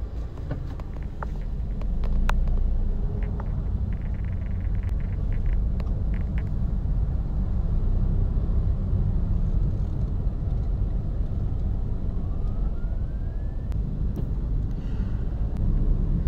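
Car engine and road noise heard from inside the cabin while driving slowly: a steady low rumble. A patch of fast light ticking comes a few seconds in, and a short rising whine passes about three-quarters of the way through.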